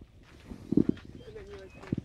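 A dove cooing in low gliding notes, with two dull thumps, one a little under a second in and one near the end.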